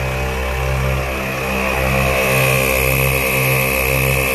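ARB twin on-board air compressor running under load, filling two tires at once: a steady mechanical hum with a regular pulsing about twice a second and a steady high whine.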